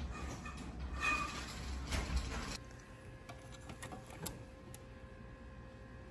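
Shop background noise with a low rumble and a few light handling clicks, cutting off abruptly about two and a half seconds in to a quieter room with a faint steady electrical hum and occasional soft clicks.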